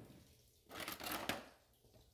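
Metal cutlery clinking and rattling in a plastic drawer organiser as a spoon is picked out: a short clatter of light clicks lasting under a second, starting a little past half a second in.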